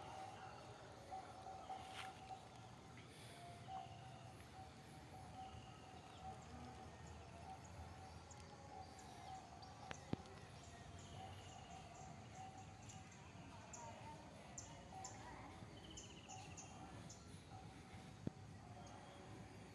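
Quiet outdoor ambience: faint scattered bird chirps and short trills over a low hiss, with a faint steady hum that comes and goes. A single sharp click about ten seconds in.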